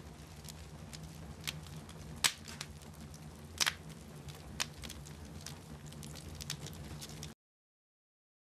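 Wood fire burning in a fireplace, crackling with a few sharp pops from the logs over a low steady hum. The sound cuts off suddenly a little after seven seconds in.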